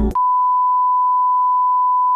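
Television colour-bar test tone: one steady, high-pitched beep that holds unchanged. Background music cuts off abruptly just as it begins.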